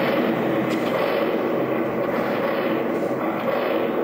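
Loud, steady rumbling stage sound effect that starts suddenly just before and holds at an even level, as the station set is plunged into emergency.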